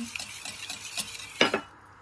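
Wire whisk beating egg in a glass mixing bowl: quick, regular clicks of the wires against the glass, about six or seven a second. About a second and a half in there is one louder knock, and then the whisking stops.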